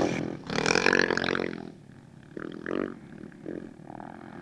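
Rally motorcycle and quad engines revving in the sand: one loud burst of revving in the first second and a half, then a few fainter, shorter revs.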